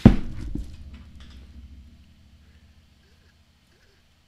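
A loud thump as objects are knocked on a tabletop, then a smaller knock about half a second later, with a low ring that dies away over about two seconds.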